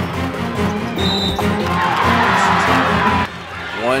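Background music under arena crowd noise, with a swell of cheering in the middle that cuts off suddenly near the end. A brief high whistle sounds about a second in.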